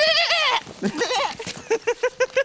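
A loud, wavering, bleat-like cry from a man's voice in the first half second, then, near the end, rapid rhythmic laughter of about five short pulses a second.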